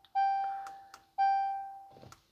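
2018 Jaguar F-Pace's cabin chime sounding twice as the ignition is switched on. Each is a clear bell-like tone that fades over about a second, with a couple of faint clicks between them.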